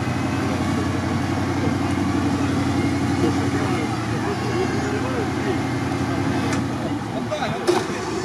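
Lada Niva off-road car's engine running steadily at low revs while the car sits bogged in deep swamp water. Voices murmur faintly in the background, and there are a couple of short knocks near the end.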